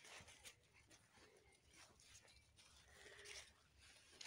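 Near silence, with faint scattered rustles and light ticks.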